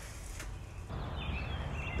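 A faint click of the phone being handled, then a quiet outdoor background in which a bird calls from about a second in.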